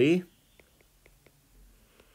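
Faint light taps and ticks of a stylus writing on a tablet's glass screen, several in quick succession.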